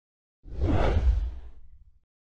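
A whoosh transition sound effect with a deep low rumble under it, swelling in about half a second in and fading away over the next second or so.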